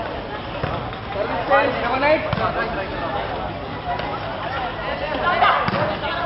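Voices shouting and calling during a volleyball game, with a few dull thuds of the ball being struck.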